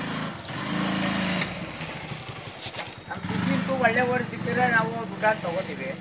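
A motorcycle engine idling with a steady low hum, loudest for the first second and a half and then fainter. People talk over it in the second half.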